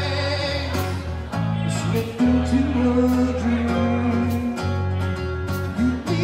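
Live rock band playing an instrumental passage: acoustic guitar, electric bass and drum kit with regular cymbal hits.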